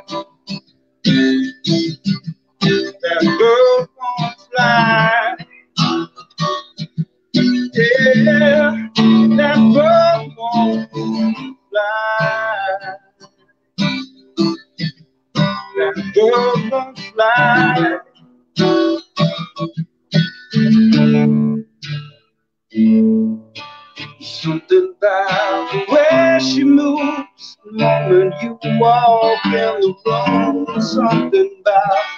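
A country song performed on acoustic guitar with a male singer. The sound cuts in and out repeatedly.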